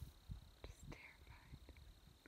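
Near silence, with faint whispering and a few small ticks.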